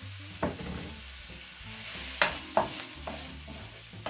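Scallops, onion and garlic sizzling in oil in a non-stick frying pan while a spatula stirs and scrapes through them, with a few sharp knocks of the spatula on the pan, the loudest about two seconds in.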